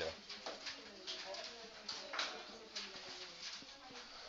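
Dry-erase marker writing on a whiteboard: faint, short scratchy strokes as words are written out.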